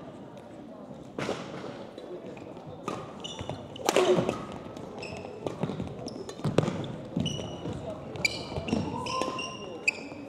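Badminton doubles rally on an indoor court: sharp racket-on-shuttlecock hits at irregular intervals and sneakers squeaking on the gym floor, with a voice about four seconds in.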